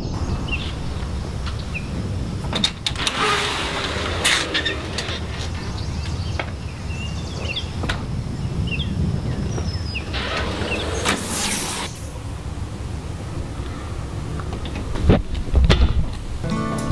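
Outdoor porch ambience: a steady low rumble with two louder swooshing swells, about three seconds in and again about ten seconds in, and scattered small bird chirps. A few sharp clicks and knocks come near the end as the storm door is handled and the box is picked up.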